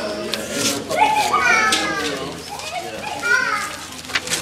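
Several young children's voices talking and calling over one another, high-pitched with rising glides, and some paper rustling from gift bags being unpacked.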